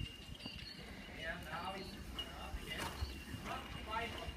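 Horse cantering on an arena's sand footing, its hoofbeats thudding dully in a steady rhythm, with a steady high whine behind.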